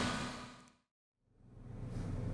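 Background noise fading out to complete silence a little under a second in, then fading back up to a steady low hum: an audio fade across a video edit.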